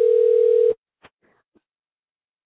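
A telephone ringing tone heard down a phone line on an outgoing call: one steady tone that stops under a second in, followed by a faint click.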